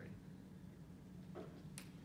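Quiet classroom room tone with a steady low hum, broken once near the end by a single faint sharp click.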